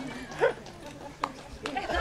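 People laughing, with a short loud burst of laughter about half a second in, a couple of sharp clicks, and crowd noise swelling near the end as applause begins.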